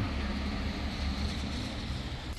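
Steady low rumble of outdoor background noise, without distinct individual sounds.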